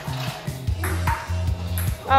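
Table tennis ball clicking off paddles and the table in a rally, a few sharp pings, over background music with a steady bass line.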